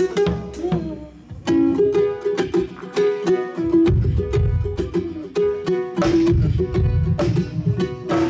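Bowed gourd fiddle playing a wavering melody of short held and sliding notes, with a drum kit striking along. A heavy low bass joins about four seconds in.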